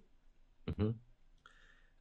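A pause in a man's talk with low room tone, broken about 0.7 s in by a sharp mouth click and a brief voiced sound, like a short hesitation syllable.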